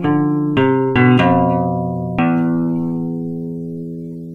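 Solo classical guitar: a quick run of plucked notes and chords in the first second or so, then a chord a little over two seconds in that is left to ring and slowly die away.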